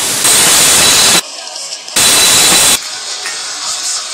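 Two loud bursts of hiss, the first a little over a second long and the second under a second, each starting and stopping abruptly.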